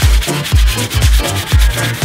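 Hand saw sawing a wooden plank in rasping strokes, over electronic dance music with a steady kick drum about two beats a second.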